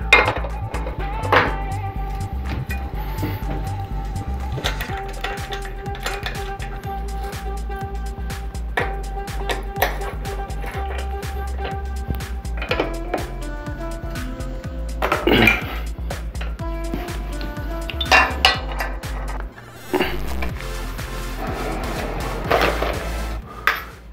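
Metal clinks and taps as a bicycle crank arm and its bolt are handled and fitted onto the bottom bracket spindle, the sharpest about a second in and around the middle and near the end. Background music with held notes plays under them.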